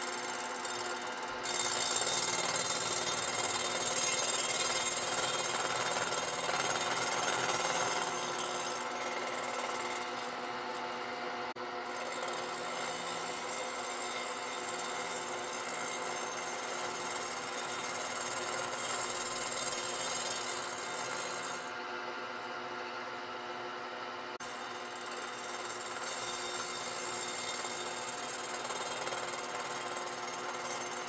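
Vertical milling machine running with its cutter machining the TIG-welded cast-aluminium muffler flange of a Stihl MS 661 cylinder flat: a steady machine hum under a hissing cutting noise. The hiss thins briefly about halfway through and drops out for about two seconds a little later.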